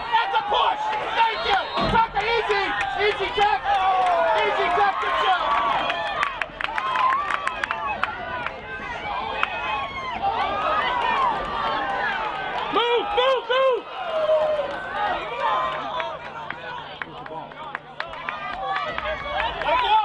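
Players and spectators at a lacrosse game shouting and calling over one another, with a few sharp knocks about a third of the way in.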